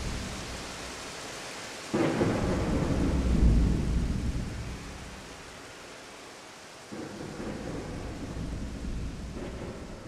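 A thunderstorm: steady rain with two sudden claps of thunder, about two seconds in and again about seven seconds in, each rumbling low and slowly fading.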